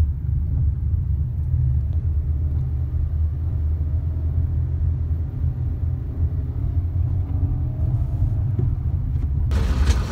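Low, steady rumble of a car on the move: road and wind noise heard from inside the cabin.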